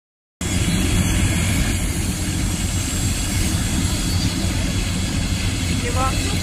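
Train passing slowly at close range: a steady low rumble of wheels on rail that holds level.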